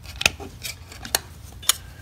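Sharp metallic clicks as the press-fit lid of a small metal pint can is pried off with a metal utensil, three of them loudest.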